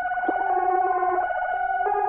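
Electronic synthesizer music: a held, pulsing synth tone with a lower note that comes in and drops out.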